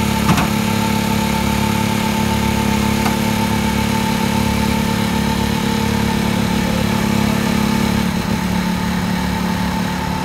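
An engine runs steadily at idle with an even drone. There is one short knock about a third of a second in.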